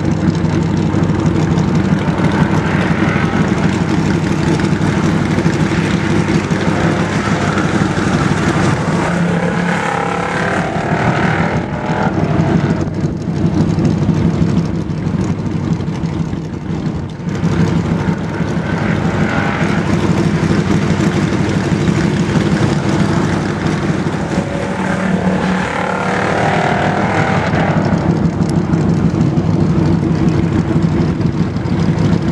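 Stock car's engine running laps around a short oval track. It swells and fades every several seconds as the car comes around, over a steady low engine drone.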